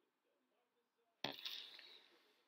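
Near silence, then about a second in a sudden sharp noise whose hissy tail fades over about a second.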